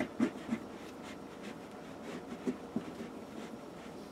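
Hands scrunching and pushing T-shirt fabric against a tabletop: soft, irregular rustles and rubs, a cluster at the start and another about two seconds in.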